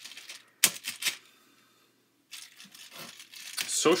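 A few sharp clicks and taps, with faint rustling between them and a brief drop to silence in the middle.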